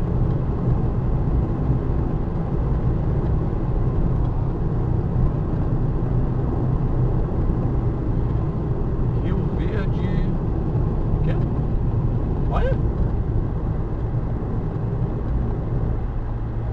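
Steady road and engine noise inside a car's cabin while it drives at highway speed, a constant low rumble with no change in level.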